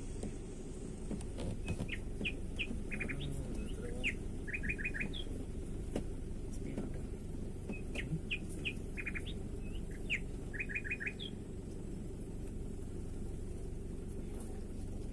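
A songbird singing two nearly identical phrases a few seconds apart, each a string of short whistled notes ending in a quick run of four, over a steady low rumble from the car moving slowly along a dirt forest track.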